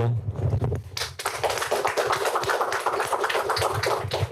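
Audience applauding, a dense patter of many hands clapping that starts about a second in and keeps going to the end.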